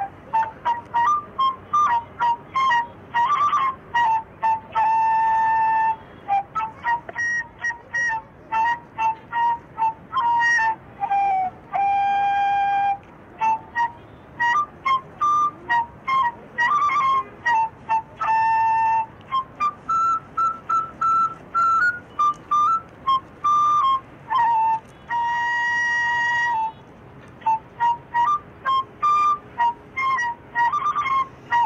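Music: a single wind instrument plays a fast melody of short, separated notes, with a few longer held notes between runs and a passage that climbs a little higher about two-thirds of the way through.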